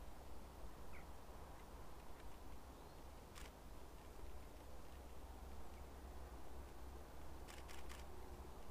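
Faint outdoor ambience with a low wind rumble, a DSLR camera shutter clicking once about three seconds in and a few more quick clicks near the end. A short faint bird chirp comes about a second in.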